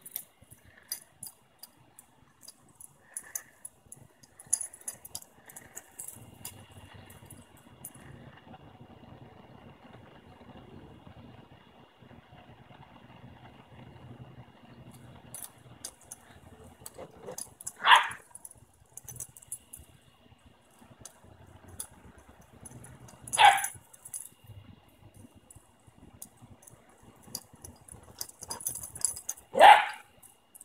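Two puppies playing chase on grass, with three short, sharp yaps several seconds apart, the loudest sounds, and light jingling of collar tags as they run.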